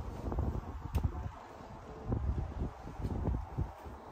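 Wind buffeting a phone's microphone outdoors, an uneven gusty rumble with a sharp click about a second in.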